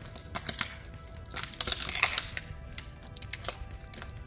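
Shattered smartphone glass and frame pieces being snapped and crunched by hand: irregular sharp cracks and clicks, densest around the middle. Quiet background music plays underneath.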